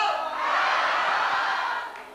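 Crowd noise: many voices at once in a mixed din, dropping away near the end.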